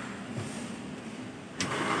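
A power switch on a CNC stepper driver module clicking on about one and a half seconds in, followed by a louder steady whir as the unit powers up.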